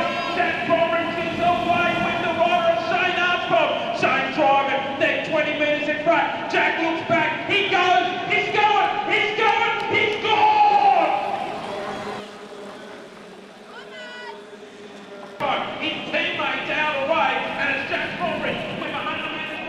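A man's race-commentary voice talking continuously, his words not made out. It drops away for a quieter stretch of about three seconds past the middle, then returns.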